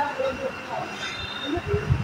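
Indistinct background voices and general room noise in a busy eatery, with no clear foreground sound.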